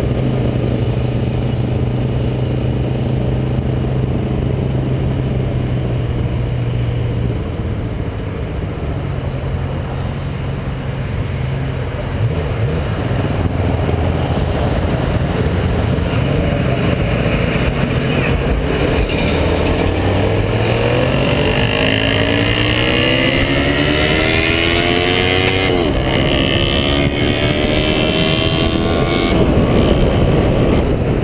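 Motorcycle engine running at low speed, then accelerating hard through the gears in the second half, its pitch climbing in repeated rises with a drop at each shift. Wind and road noise run underneath.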